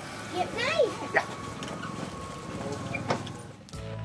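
Background voices, a child's among them, with short rising-and-falling calls in the first second, over a low steady hum.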